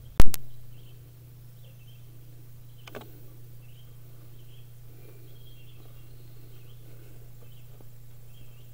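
Outdoor ambience: faint bird chirps over a steady low hum, with a sharp, very loud click just after the start and a softer click about three seconds in.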